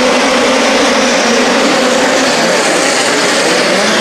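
A field of USAC midget race cars running hard together on a dirt oval at the start of the race: a loud, dense engine drone of many overlapping, fairly steady pitches.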